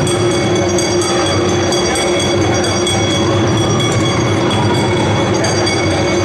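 Several large taiko drums beaten together in a dense, steady rumble, with no single stroke standing out.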